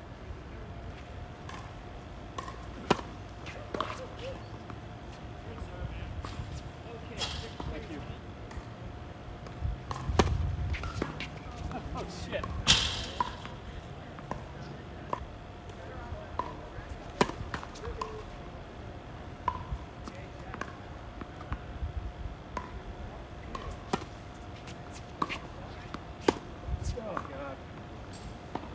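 Tennis rally on a hard court: irregular sharp pops of racket strikes on the ball and ball bounces, some near and loud, others distant.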